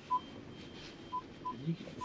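Short electronic beeps from the VinFast VF8's cabin, all at the same pitch: one just after the start, then two about a third of a second apart a little past one second, over a quiet cabin.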